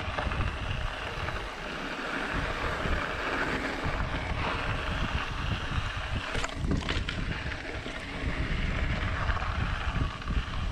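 Wind rushing over the microphone and tyres rolling on a dirt trail as a mountain bike descends, with the bike rattling; a few sharp clatters about six and a half seconds in as it rolls over rocks.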